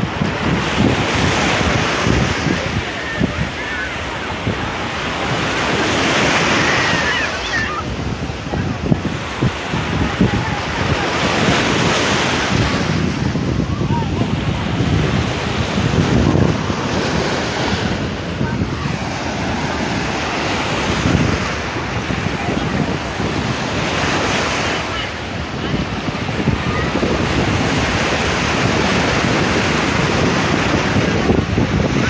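Black Sea surf breaking and washing up the sand, swelling and fading about every five seconds, with wind buffeting the microphone.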